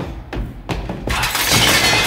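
Crash of shattering, breaking glass used as a sound effect. It starts suddenly with a few sharp hits, then swells about a second in into a dense, loud spray of breakage.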